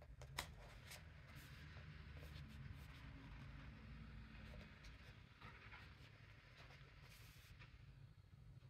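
Faint handling of a paperback coloring book: a sharp tap about half a second in, light rustling of the pages, then a single page turning near the end.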